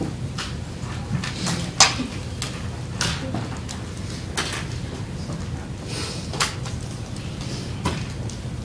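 Scattered, irregular light clicks and knocks over a steady low hum, the sharpest click about two seconds in.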